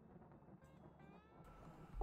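Near silence: faint room tone, with a faint, brief pitched sound that bends in pitch about a second in.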